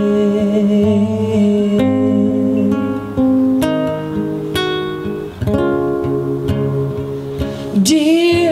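Acoustic guitar playing an instrumental passage of a song, picked notes and chords ringing on one into the next.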